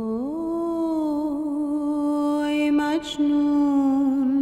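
Khorasani folk music: a single long melodic line slides up at the start and holds a wavering note. It breaks off briefly about three seconds in, then carries on.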